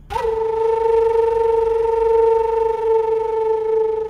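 Background score: a single held synthesizer note, steady and unbroken for about four seconds, used as a dramatic sting.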